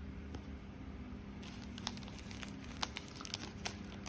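Clear plastic packaging crinkling as it is handled, quiet at first, then a scatter of small crackles through the second half.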